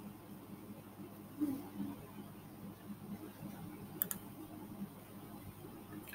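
Quiet room tone with a single computer mouse click about four seconds in.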